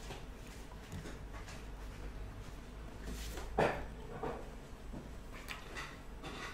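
A man breathes in and lets out a short "ah" about midway, with a smaller vocal sound just after, over a low steady hum.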